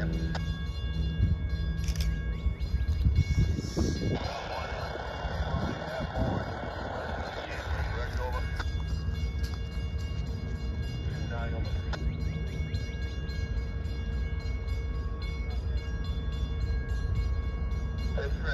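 Steady low engine rumble with a few held tones, joined by a louder rush of noise for a few seconds from about 4 seconds in.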